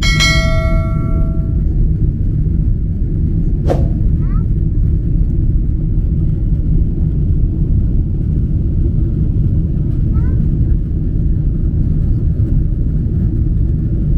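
Steady, loud low rumble of a jet airliner's cabin during climb-out. At the start there are a couple of clicks and a bell-like ding that rings for about a second and a half, like a subscribe-bell sound effect. Another click comes about four seconds in.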